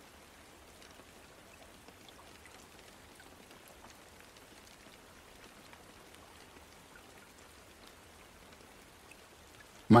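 Faint, steady rain with a soft patter of raindrops.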